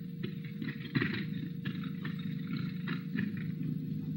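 Steady low hum with faint, irregular clicks and crackle: the background noise of an old film soundtrack between lines of narration.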